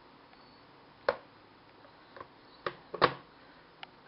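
A plastic sippy cup knocking against a plastic high-chair tray: about five short, sharp knocks, the loudest about three seconds in.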